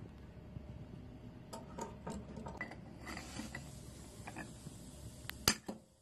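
Light clinks, taps and scrapes of metal on metal as adjustable pliers grip a square steel-tube cementation canister and slide it out across the floor of an electric heat-treating oven. A single sharp metallic click comes about five and a half seconds in.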